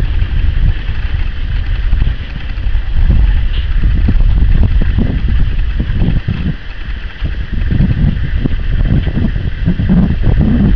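Wind buffeting the camera microphone: a loud, uneven low rumble that swells and dips in gusts.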